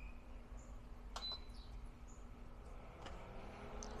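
Amazon Basics induction cooktop's touch panel beeping faintly as its buttons are pressed: a short beep at the very start and a click with a short, higher beep about a second in. A faint steady hum runs underneath.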